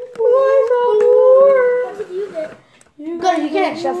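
A child's voice held in a long, wavering note for about two seconds, a drawn-out wail or sung moan, followed by a shorter run of voice near the end.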